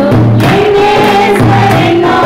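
Three women singing a Christian hymn together into handheld microphones, holding long sung notes that step from pitch to pitch.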